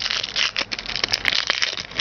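Plastic wrapper of a 2010 Score Football trading-card pack crinkling and crackling irregularly as it is handled and opened by hand, with a few sharp clicks near the middle.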